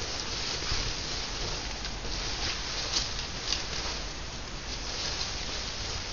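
Rustling and crinkling of a large wedding veil's fabric being handled and untangled, a steady rustle with a few sharper crackles.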